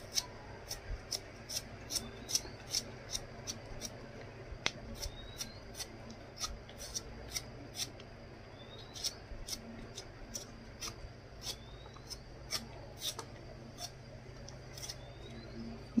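Large kitchen knife cutting and paring the tough outer parts off a fresh bamboo shoot: a string of short crisp cuts, irregular, about two or three a second.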